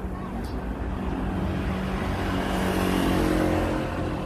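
Street traffic: a motor vehicle passing on the road, its engine hum and tyre noise swelling to a peak about three seconds in and then easing off.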